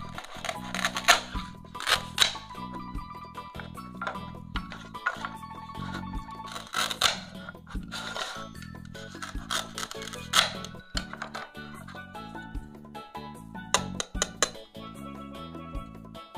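Background music, over which come several short rips and clicks as a plastic toy knife parts the velcro-joined slices of a toy plastic pizza.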